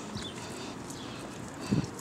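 Low outdoor background noise with a few faint ticks and a soft thump near the end.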